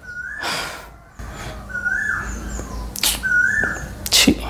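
Whimpering: four short high-pitched whines, each rising and then dropping, with brief breathy sounds between them.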